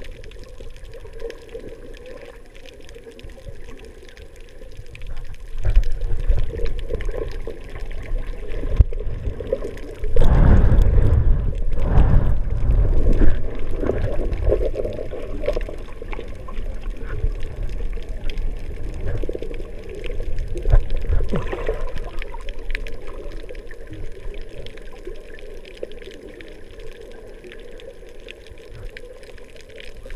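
Underwater water noise heard through an action camera's waterproof housing while snorkeling: sloshing, gurgling water movement with irregular surges, loudest a little before the middle.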